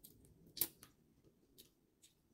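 Eating sounds of shrimp being eaten by hand: a few sharp wet clicks of lip smacking and sucking at the fingers and the shrimp, the loudest just over half a second in and another about a second and a half in.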